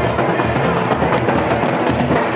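Drums played live for a tribal dance, beating a steady, driving rhythm.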